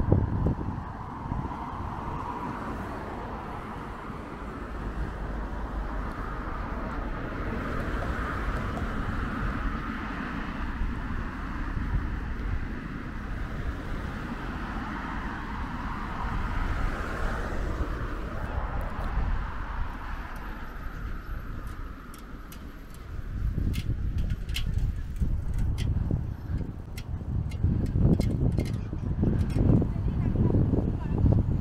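Road traffic passing on a bridge: tyre and engine noise of cars swelling and fading as they go by. About twenty seconds in the traffic thins, a few faint clicks come through, and a low, uneven rumble builds over the last seven seconds.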